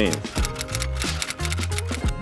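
Rapid clicks of computer keyboard typing over background music with a steady bass line.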